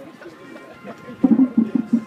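Marching drumline drums start playing about a second in: loud, even drum strokes at roughly six a second.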